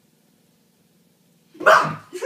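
Near silence, then about a second and a half in a sudden loud shout from a person jumping out at a cat to scare it.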